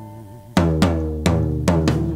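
Band music with no singing: a held chord fades away, then about half a second in the drums and struck chords come in sharply, with a run of hits close together.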